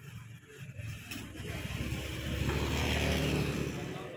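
A motor vehicle passing by on the street, its engine noise growing louder to a peak about three seconds in and easing off near the end.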